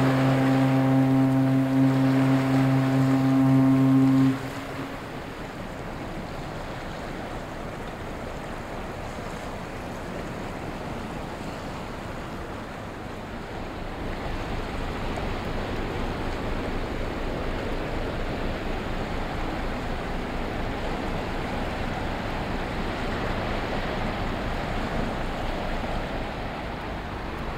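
A ship's horn sounds one long, low, steady blast of about four seconds. Then comes a noisy hiss of river water and wind, and from about halfway a low rumble of the passing multipurpose cargo ship grows louder.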